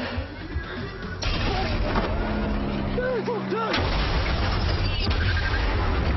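A shoulder-fired rocket launcher goes off with a sudden blast about a second in, followed by shouting and then an explosion with a heavy rumble that carries on to the end.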